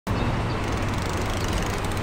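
Outdoor city ambience: a steady low rumble of traffic, with faint quick ticks near the end as a share bicycle rolls into view.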